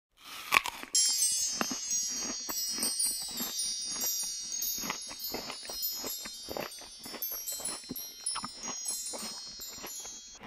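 Close-miked crunching and chewing of a small snack, with a sharp bite about half a second in, under a layer of high, steady chiming tones like wind chimes that starts about a second in and stops near the end.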